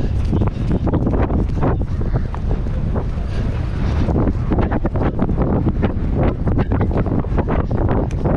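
Wind buffeting the microphone of a camera on a galloping pony, with the quick, repeated thuds of its hooves on the turf running through it.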